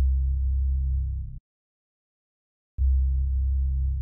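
Two deep, low synthesized bass tones, trailer sound design. Each lasts about a second and a half, starts with a click and cuts off suddenly, with total silence between them.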